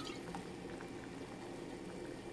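Doenjang broth boiling at a rolling boil in an enamelled cast-iron pot, a steady bubbling with many small pops.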